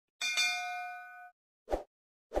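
Sound effect of a notification bell: one bright ding that rings out for about a second, then a short pop near the end.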